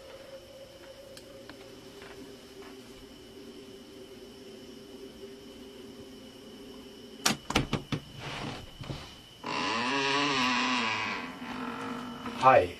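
A low steady hum, then several sharp clicks of the front door's lock being worked about seven seconds in. Near the end the door hinges creak loudly for about two seconds as the door swings open.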